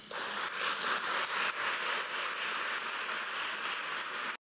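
Audience applauding: many hands clapping together, starting suddenly and holding steady.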